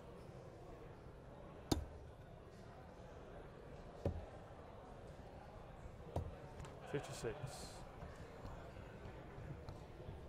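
Three steel-tip darts thudding one after another into a bristle dartboard, a little over two seconds apart, each a short sharp knock.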